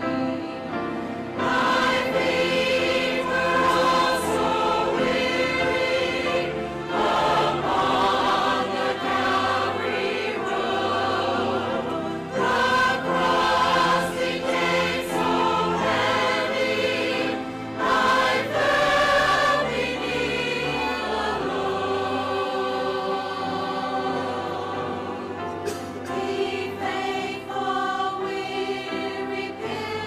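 A mixed choir of men's and women's voices singing together in sustained phrases, growing louder about a second and a half in.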